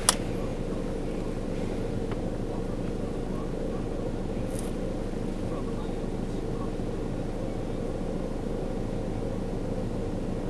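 Steady low hum of an idling vehicle engine, with a sharp click right at the start.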